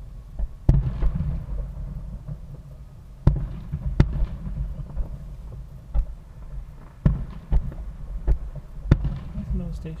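Distant aerial fireworks shells bursting: about eight sharp bangs at irregular intervals, coming faster in the second half, over a steady low rumble.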